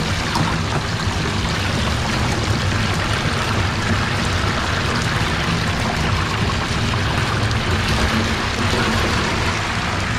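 Deep fryer oil bubbling and sizzling steadily around frying chicken wings, over a steady low hum.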